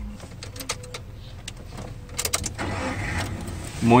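Car engine being started from inside the cabin: a few light clicks, then a steadier engine noise over the last second or so, under a low steady hum.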